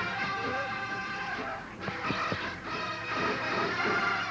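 Marching band playing, the brass holding sustained chords, with a few sharp drum strikes about two seconds in. The sound is off a worn VHS tape of a TV broadcast.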